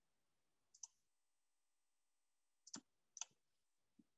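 Faint computer mouse clicks against near silence: one about a second in, then two close together near the end.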